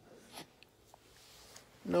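A quiet small room with a brief soft noise and a couple of faint clicks, then a voice says "No" at the very end.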